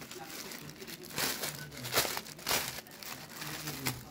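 Rustling and crinkling of lightweight suit fabric being handled and moved about, in several short rustles.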